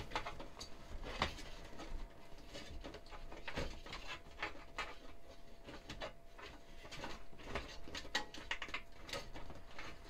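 PC power cables being pulled and routed inside a computer case: a scatter of small irregular clicks, rustles and scrapes.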